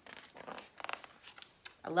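Paper rustling and sliding as an open hardcover picture book is handled and shifted, with a short run of quick scratchy clicks about halfway through. A woman's voice begins speaking near the end.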